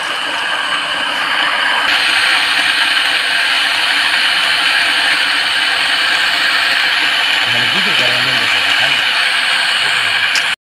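A water pump running steadily as it draws water out of the pond through a suction hose with a mesh strainer, its noise rising a little about two seconds in.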